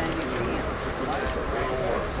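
Indistinct chatter of passengers inside a moving railway passenger car, over the car's steady low running rumble.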